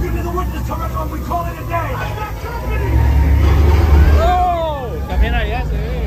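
Studio-tour tram ride soundtrack: a heavy, steady low rumble with voices over it, and a couple of falling, wavering cries about four to five seconds in.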